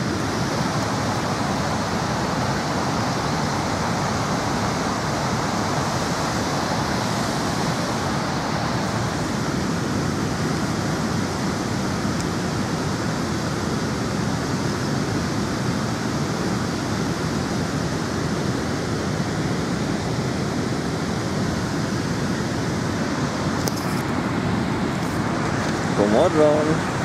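Waterfall rushing steadily, an even noise with no breaks or changes.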